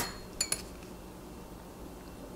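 Thin steel measuring tools clinking as they are handled and set down on the wood: a tap at the very start, then two quick ringing metallic clinks about half a second in, followed by quiet room tone.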